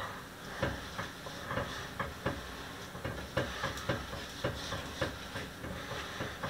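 A utensil stirring thick white chocolate ganache in a stainless steel bowl over a bain-marie, making light, irregular clicks and scrapes against the metal a few times a second over a faint steady hiss.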